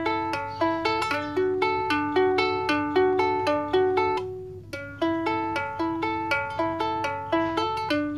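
Mahalo Kahiko-series ukulele fingerpicked: a steady run of single plucked notes, three or four a second, with a short break about halfway through.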